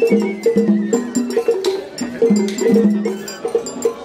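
Kawagoe festival hayashi music from the float: rhythmic drum strokes and the quick clanging of a small hand gong (atarigane), over sustained pitched notes.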